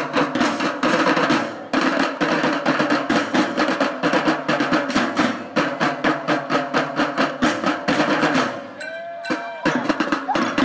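Elementary-school marching drum band playing snare drums and bass drums in fast, dense rhythms with drum rolls. The drumming breaks off about eight and a half seconds in.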